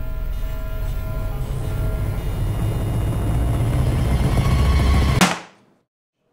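Dark horror-film score: a low rumbling drone with faint held tones above it swells steadily, peaks in a sharp hit about five seconds in, then cuts off suddenly.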